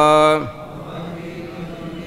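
A man chanting a line of Sanskrit verse holds its last syllable, which falls away about half a second in. After that a fainter group of voices repeats the line together.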